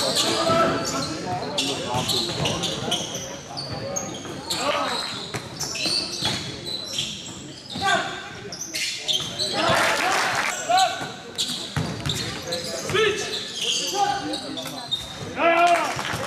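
Basketball game play in a large reverberant sports hall: a ball repeatedly bouncing on the court floor amid sharp knocks, with players and spectators calling out in short shouts.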